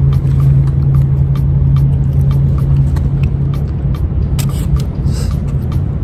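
A steady low engine hum, like an idling motor vehicle, with scattered faint clicks and a brief hiss about four and a half seconds in.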